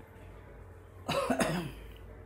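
A person coughing briefly, about a second in, over a faint steady hum.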